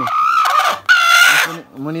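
Chicken held in the hand calling twice: a first call, then a louder call about a second in.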